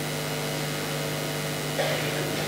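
Steady electrical hum with faint hiss from the microphone and amplifier system, heard in a gap between words. A faint, brief sound comes near the end.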